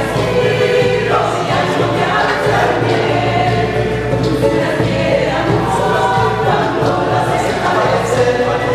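Mixed choir of men's and women's voices singing an Argentine carnavalito in harmony, holding chords that move every second or so.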